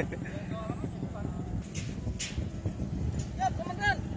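Small motor scooter engine running at low speed as it pulls away, a steady low rumble, with brief voices over it.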